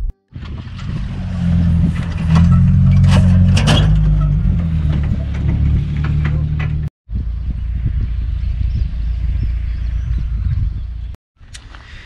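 Car driving along a rough dirt track: steady engine and road rumble with scattered knocks from the bumps. The sound cuts out briefly three times, near the start, about seven seconds in and about eleven seconds in.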